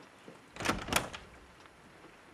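A door being opened, with two quick, sharp bursts about a second in.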